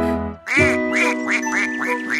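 A quick run of duck quacks, about three a second, beginning about half a second in over a sustained music chord.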